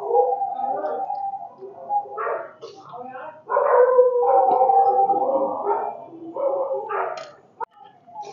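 Vocal sounds in several bursts, some with drawn-out held tones.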